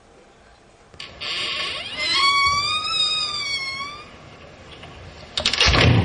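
A high-pitched, wavering cry or scream held for about two seconds, after a breathy hiss, followed near the end by a short loud clatter.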